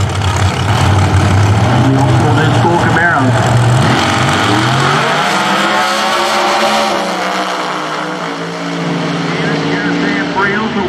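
Two Pro Outlaw 632 drag cars' 632-cubic-inch V8s run hard at the starting line, then launch about four to five seconds in. Their engine notes climb in pitch and fade as the cars race away down the track.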